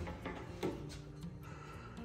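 Faint background guitar music with steady held notes, and a few soft clicks.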